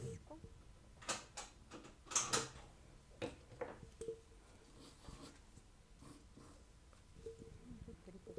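Faint rustling and light taps of paper pattern pieces being handled and smoothed on fabric, in a few short bursts with quieter gaps between.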